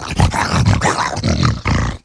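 A man growling like a wolf, close on the microphone, breaking into a laugh near the end before the sound cuts off suddenly.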